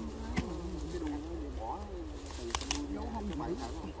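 A flying insect buzzing close to the microphone, its low drone wavering up and down in pitch as it moves about, with a few sharp clicks from the digging.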